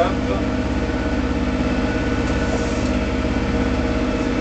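Steady, even drone of the 2008 Bavaria 30 Cruiser's inboard diesel engine running while the boat motors, heard from inside the cabin.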